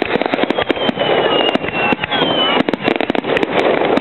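Aerial fireworks bursting in a dense run of sharp crackles and pops. A thin high whistle falls slowly in pitch through the first half, and a shorter one falls just after the midpoint.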